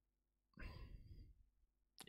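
A man's soft sigh, lasting under a second, starting about half a second in, otherwise near silence.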